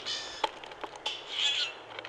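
Common grackles calling at a feeder: a short harsh rasp at the start and a longer raspy call in the second half, with a sharp tap in between.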